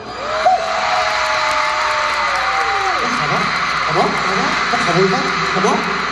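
Audience cheering and screaming: a steady hiss of many voices, with one long held scream for the first few seconds, then many short rising shrieks and shouts from about three seconds in.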